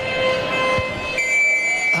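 Held horn-like tones over faint crowd noise: a lower tone in the first second, then a high, piercing one from just after a second in, loud enough that a commentator jokes it wakes him.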